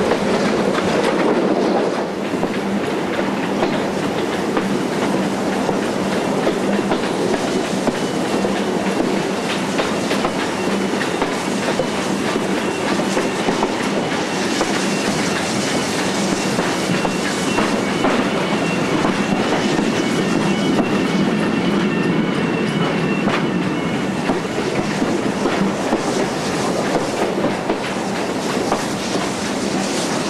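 Heritage passenger train running along the line, heard from an open carriage window: a steady rumble with the wheels clicking over the rail joints. It is briefly louder for the first couple of seconds under a stone overbridge, and a faint high-pitched squeal comes and goes through the middle.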